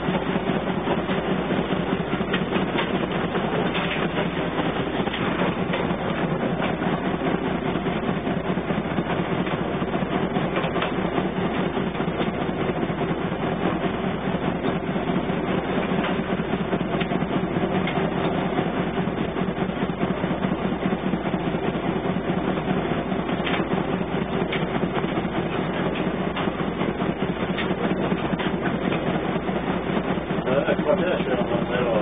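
Wichmann 3ACA three-cylinder two-stroke diesel of an old wooden route boat running steadily at good speed, a fast even beat heard from the wheelhouse.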